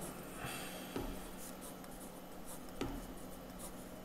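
Marker pen writing on paper: faint scratching strokes, with two light taps of the pen tip, about a second in and again near three seconds.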